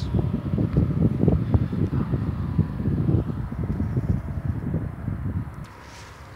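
Wind buffeting the microphone on an open field: a loud, uneven low rumble that drops away abruptly near the end.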